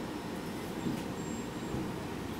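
Steady low rumble of a city bus heard from inside the passenger cabin: engine and road noise, with a light click about halfway through.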